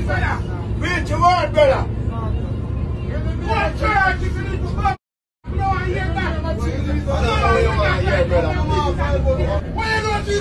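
A man's raised voice and other passengers talking inside a bus, over the steady low rumble of its engine. The sound cuts out completely for about half a second near the middle.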